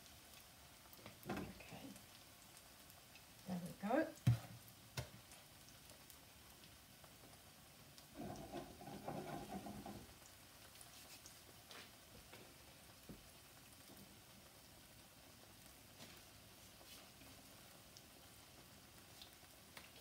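Small banana fritters frying in hot oil in a nonstick pan, a faint steady sizzle. A few short knocks of spoon and bowl come in the first few seconds, and a louder stretch of handling noise lasts about two seconds around eight seconds in.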